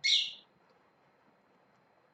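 A pet parrot gives one short, high-pitched call at the very start, lasting under half a second.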